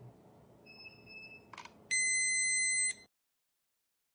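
Handheld breath alcohol tester beeping: a faint short tone about a second in, a brief click, then one loud steady beep lasting about a second. The loud beep signals that the breath test has finished measuring and the result is ready.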